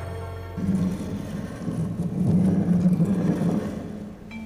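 A loud, low rumble begins about half a second in as the music drops out. It grows louder in the middle and stops near the end, when music with clear sustained notes returns.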